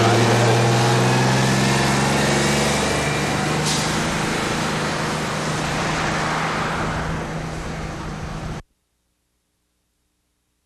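City transit bus's diesel engine running as the bus drives away, steadily fading with distance, then cutting off abruptly about eight and a half seconds in.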